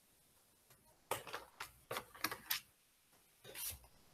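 Faint short clicks and rattles: a quick cluster of them starting about a second in, and one more near the end.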